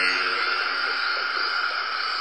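A steady, even hiss in the upper-middle range, holding level.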